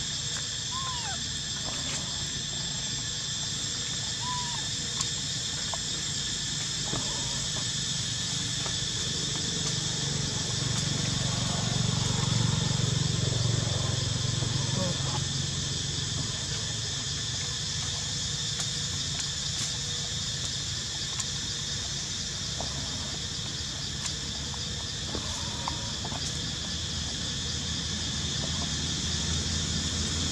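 Steady, high-pitched chorus of insects in the forest, with a low rumble that swells in the middle and a few faint, short chirps.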